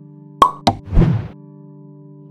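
Outro sound effects over background music with a steady low drone: two quick pops about half a second in, then a short noisy burst.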